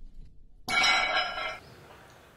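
A bright ringing chime starts suddenly about two-thirds of a second in and fades out within a second. It is a sound effect marking the cut between video clips.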